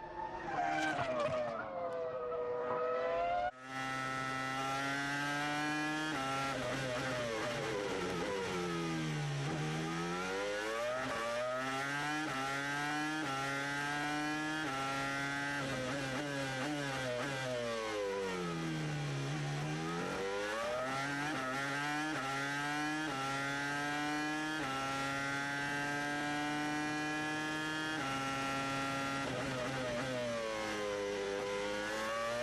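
Renault R25 Formula 1 car's 3.0-litre V10 at full racing revs. For the first few seconds it is heard from trackside as the car goes by, its pitch sliding. Then from onboard it climbs in quick steps through the upshifts and twice plunges under heavy braking and downshifts before winding back up.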